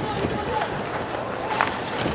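Ice hockey arena game sound: steady crowd noise over skating play, with one sharp clack of a stick on the puck about one and a half seconds in.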